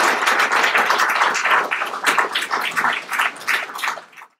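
An audience applauding: dense clapping that thins toward the end into more separate hand claps.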